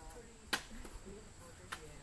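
Quiet stretch with faint, distant voices and two sharp clicks about a second apart.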